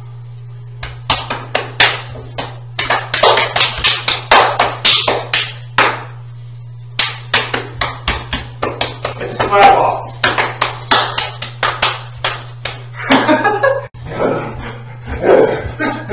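Rapid, loud hand slaps, several a second, with a brief pause in the middle and bursts of voice among them a little past halfway and again near the end.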